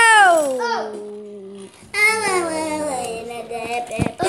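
Children's voices calling out in long, drawn-out tones: one call falls in pitch over the first second or so, then another held, sing-song call starts about two seconds in.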